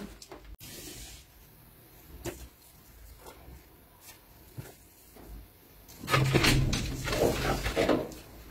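A wooden tailor's square and a sheet of pattern paper handled on a table, with faint taps and rustles. About six seconds in comes a louder rough scraping and rustling that lasts about two seconds.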